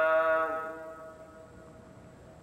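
The end of one long held chanted note in a low male voice, wavering slightly in pitch, fading away about half a second in and leaving only a faint background.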